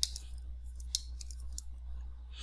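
A few short, sharp clicks, four in two seconds, over a steady low electrical hum.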